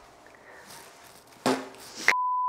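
Quiet room tone, then a short burst of a person's voice about one and a half seconds in.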